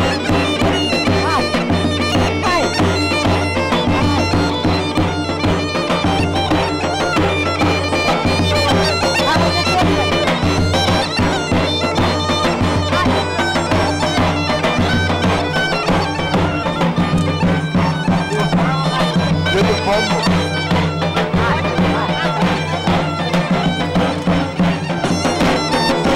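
Bulgarian gaida bagpipe playing a folk melody over a steady low drone, with a drum beating along.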